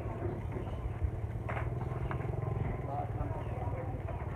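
A small engine running steadily, a low rapidly pulsing drone, with faint voices over it.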